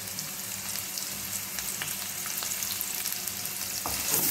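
Sliced shallots and garlic sizzling in hot oil in a stainless-steel kadai: a steady hiss with faint scattered crackles. A wooden spoon starts stirring the pan near the end.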